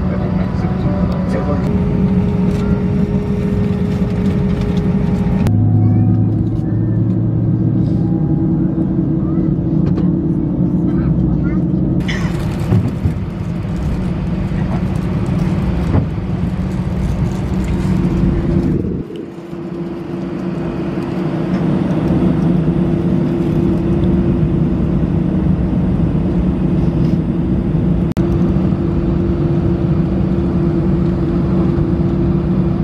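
Airliner cabin noise: the steady drone and low hum of the jet engines heard from inside the cabin while the plane taxis at night. The sound changes abruptly three times, and builds up again after a dip about two-thirds of the way through.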